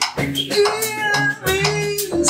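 Live blues trio playing: electric guitar over electric bass and a drum kit, with regular drum strokes. From about half a second in, a lead note is held and bent.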